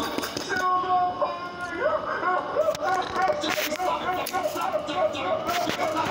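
Character voices over background music from a video's soundtrack, with no clear words.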